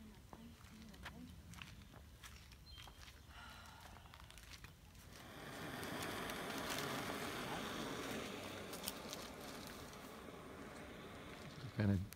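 A low outdoor background with a few small clicks. From about five seconds in, a louder rustling rises with people talking faintly in the background, then eases off near the end.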